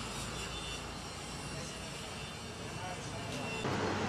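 Indistinct voices over a steady background hum, with the background changing abruptly near the end.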